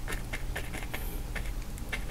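Faint, irregular light taps and scratches of a bristle brush dabbing paint onto canvas, over a low steady hum.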